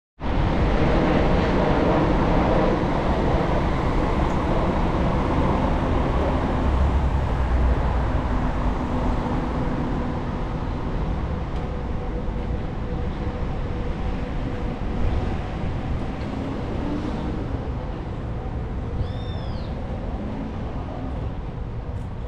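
City traffic noise with a heavy, steady low rumble of wind on the microphone of a moving bicycle, and a faint steady hum under it. A short high squeal cuts through near the end.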